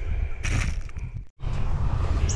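Low wind rumble on the microphone outdoors, with a brief rustle about half a second in; the sound cuts out for an instant past the middle and the rumble returns.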